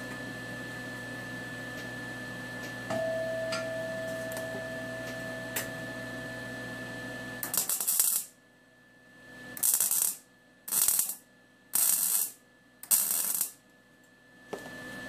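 Steady shop hum, then about halfway through a MIG welder's arc crackles in five short bursts, each under a second and about a second apart: tack welds joining steel silverware.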